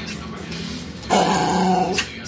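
A small white dog growls loudly and roughly for about a second, starting a little past the middle.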